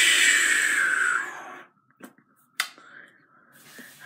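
A long, loud breathy exhale into the microphone trailing off a laugh, fading out after about a second and a half. Then two light clicks, about half a second apart, and near quiet.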